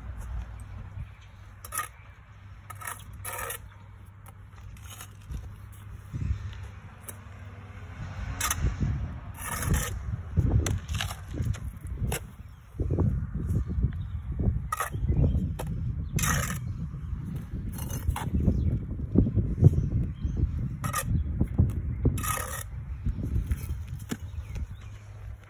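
Bricklaying with a 9-inch W. Rose brick trowel: steel scraping and clinking against brick and mortar, with irregular sharp clicks as bricks are tapped into place. Low thuds and scuffing run underneath, heavier from about a third of the way in.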